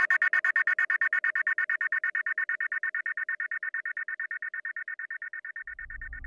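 Closing bars of a trance track: a pulsing synth chord, chopped into fast even stabs about eight times a second, fading out with the bass and drums gone. A low rumble comes in near the end.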